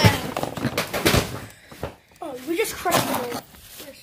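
A loud thump, then about a second of knocking and rustling, followed by a child's voice.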